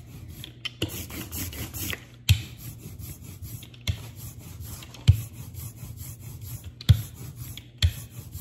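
Rubber brayer rolled back and forth over printing ink on a plate, a sticky, rasping roll. About six sharp knocks come every second or two through it.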